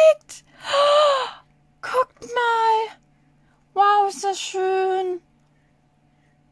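A woman's drawn-out, wordless exclamations of delight, three 'ooh'-like sounds with pauses between, the first breathy and falling in pitch.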